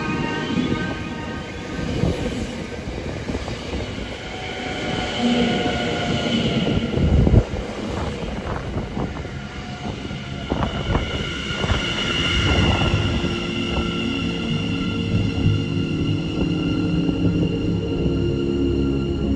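Electric passenger train running slowly alongside a station platform close by, with a high squealing whine from its wheels and running gear that rises and falls in pitch. There is one sharp, loud thump about seven seconds in.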